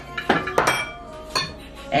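A few sharp metallic clinks of cookware as a metal pot lid is handled over a pot on the stove.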